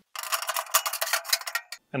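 Metal cooking grates of an offset smoker being set into the cooking chamber, clattering and clinking metal on metal in a quick run of small clicks that stops shortly before the end.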